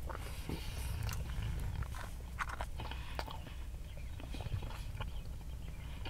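Close-miked chewing of a ham, egg and cheese breakfast sandwich: soft wet mouth sounds with many small clicks and smacks, over a low steady hum.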